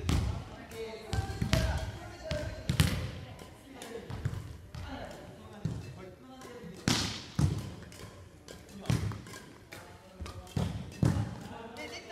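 Irregular sharp strikes and thuds of badminton play: rackets hitting shuttlecocks and feet landing on a wooden gym floor, with players' voices in the background.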